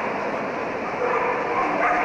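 Samoyeds yipping and barking in short pitched calls, mostly in the second half, over steady crowd chatter.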